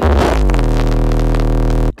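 Very loud, distorted low buzzing tone inserted as a sound effect. It starts suddenly after dead silence, dips slightly in pitch, holds steady, and cuts off abruptly near the end.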